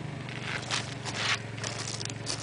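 Several short rustling, crunching scrapes on dry grass, like footsteps or shuffling, bunched about half a second to a second and a half in, over a steady low hum.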